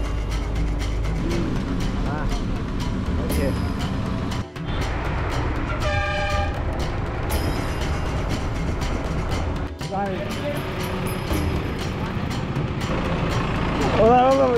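Steady engine and road rumble of a moving road vehicle, heard from on board, with a vehicle horn sounding once for about a second and a half around the middle.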